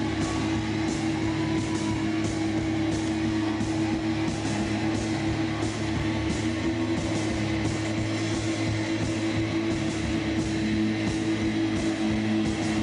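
Loud rock music: guitars over a drum beat, with cymbal strokes about twice a second and a held note underneath.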